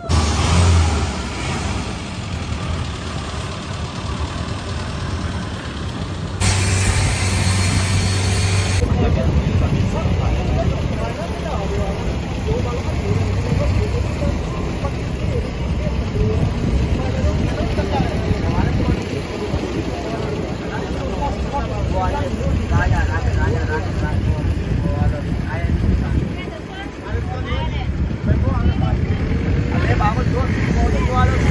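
Wind buffeting the microphone, then a motorboat engine running steadily under way, with wind and water rushing past. A loud hiss lasts about two seconds, starting about six seconds in.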